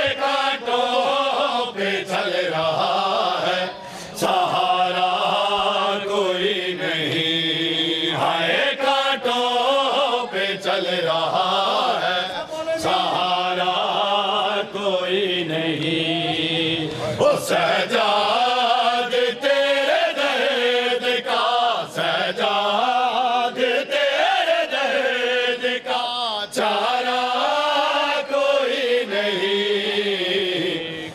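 Men singing a Punjabi noha (Shia lament) together through a microphone and loudspeakers, a steady melodic chant in a repeating refrain. It is punctuated by sharp, roughly regular slaps of matam, mourners beating their chests with open hands in time with the lament.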